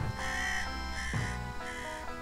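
Crow cawing three times, harsh and rasping, over background music.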